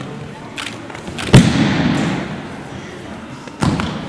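Bodies landing on a foam gym mat during aikido throws and breakfalls. A loud thud with a hall echo comes about a second in, and a second thud comes shortly before the end.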